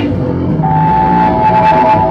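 Loud live punk band playing, electric guitar holding steady sustained notes.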